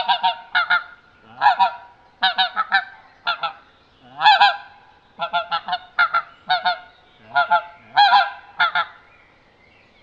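Plastic Pinkfoot Hammer pink-footed goose call, coughed into, giving short goose-like notes in quick runs of two to four, stopping about a second before the end. This is the toned-down calling meant for pink-footed geese that are already close in.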